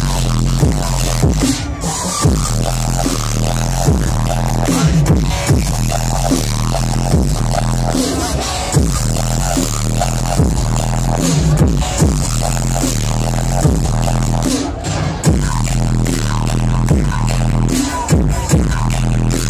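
Loud dubstep DJ set played over a festival sound system and heard from within the crowd, with heavy sustained bass and a steady beat. The high end drops out briefly twice, about two seconds in and near the fifteen-second mark.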